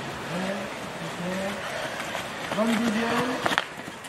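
People calling out and talking in short, drawn-out phrases, with a sharp tap near the end.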